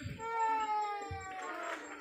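A long, drawn-out cry lasting most of two seconds, slowly falling in pitch and dropping to a lower note near the end.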